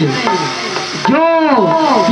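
A man's voice in slow, drawn-out stage declamation: a held syllable falls away at the start, a faint hiss fills a short pause, and about a second in a new long syllable rises and falls.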